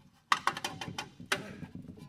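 Steel brake rotor knocking and scraping against the hub as it is shifted and rotated by hand, with a sharp metallic click about a third of a second in and another just past a second in.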